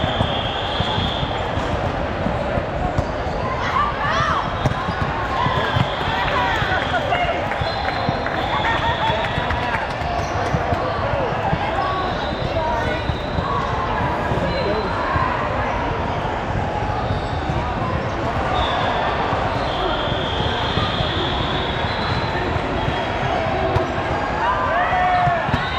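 Volleyballs being hit and bouncing on a hardwood gym floor, with many overlapping voices of players and spectators.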